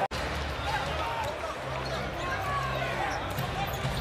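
Basketball game sound from the arena: a ball dribbled on the hardwood court over a steady crowd murmur, with scattered short squeaks and ticks. The sound drops out for an instant at the very start.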